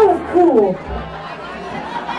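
A voice sliding down in pitch over the first half second or so, then the murmur of crowd chatter in the club over a low steady hum.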